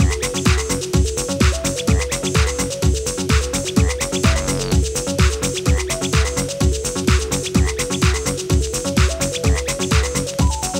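Electronic dance music playing from a vinyl record on a direct-drive turntable. A steady four-on-the-floor kick drum runs at about two beats a second under a repeating, stepping synth arpeggio.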